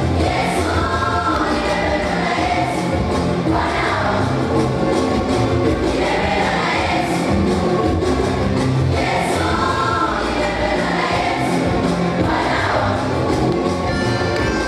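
Gospel song sung by a children's choir over a steady backing beat, at an even, loud level throughout.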